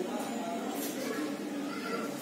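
Indistinct voices in the background, a voice rising and falling in pitch, with a few short hissy sounds.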